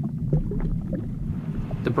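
Low, steady rumbling drone from a documentary soundtrack's ambient sound bed, with a few faint ticks; a man's narrating voice begins right at the end.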